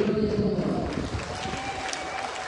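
Outdoor stadium ambience: a distant voice echoing over a public-address system fades away, leaving a noisy background of crowd and open-air sound.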